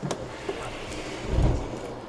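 Handling noise from working on a 3D printer close to the microphone: a sharp click at the start, then a low rumble about one and a half seconds in.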